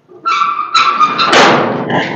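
Small steel door in a sheet-metal gate being opened: two held metallic squeals from the hinges, then a louder scraping rattle of the door as it swings open near the end.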